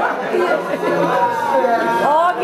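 Chatter of several people talking over one another, with no music under it.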